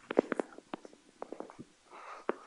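Chalk tapping and clicking on a blackboard during writing: a quick cluster of light taps in the first half second, then a few more spaced out.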